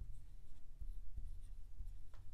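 A marker writing on a blackboard: a few faint strokes over a low steady room hum.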